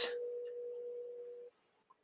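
The end of a woman's spoken word, then a faint steady tone that cuts off suddenly about one and a half seconds in, leaving silence.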